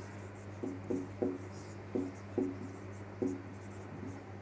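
Marker pen writing on a whiteboard: about six short squeaks at irregular spacing as the letters are stroked out, over a steady low hum.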